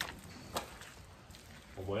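Quiet barn background noise with two short clicks in the first second, then a man's voice briefly near the end.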